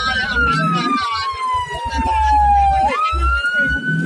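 Ambulance siren wailing: one long tone that slowly falls in pitch for nearly three seconds, then sweeps quickly back up near the end.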